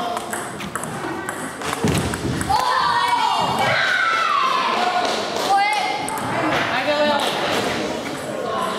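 Celluloid-type table tennis ball struck by rubber-faced paddles and bouncing on the table in a short rally, a few sharp clicks in the first second and a half. From about two and a half seconds in, voices call out loudly in a reverberant hall.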